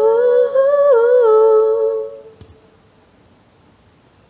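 A young woman's voice holding a long wordless sung note, wavering slightly in pitch, that stops about halfway through; after it, a brief soft noise and faint room sound.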